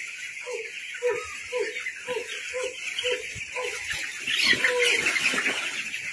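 A flock of broiler chicks peeping as a steady, dense chorus. A lower, short falling call repeats about twice a second through it.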